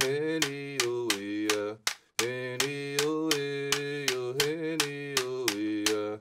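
A man singing a traditional Pomo dress song in held, chant-like notes. He keeps a steady beat of about four clicks a second on a split bamboo clapper stick struck against his palm, with a brief pause for breath about two seconds in.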